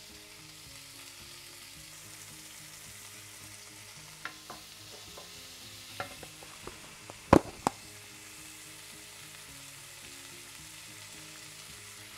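Onion and bell peppers frying in oil in a nonstick skillet, a steady soft sizzle, while a wooden spoon stirs them. A few sharp knocks of the spoon against the pan come in the middle, the loudest about seven seconds in.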